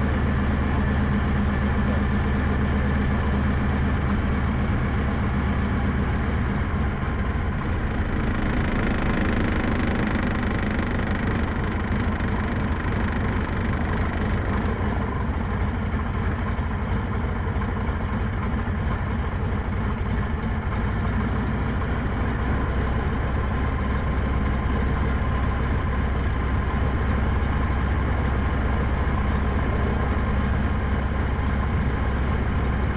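Biplane's piston engine and propeller running at low taxi power, a steady low drone, with a few seconds of stronger hiss about eight seconds in.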